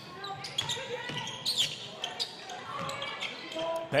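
Basketball being dribbled on a hardwood court, with scattered short bounces and faint players' voices on the floor.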